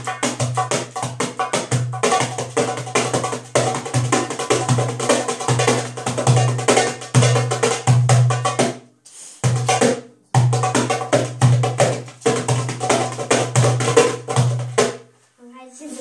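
Goblet drum (darbuka) played with both hands: fast rolls of sharp, high finger strokes over repeated deep bass strokes from the centre of the head. The playing breaks off briefly about nine seconds in and again near the end.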